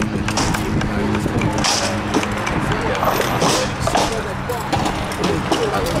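Wind on the microphone and people talking in the background, with a few sharp knocks about a second and a half and three and a half seconds in.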